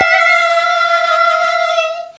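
A voice holding one long high note, swooping up into it just before and fading out just before the end.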